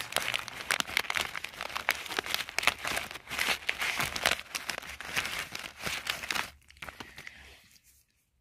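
Tissue paper and clear plastic packaging crinkling and rustling as hands dig through them and draw out paper frames, dying away about six and a half seconds in.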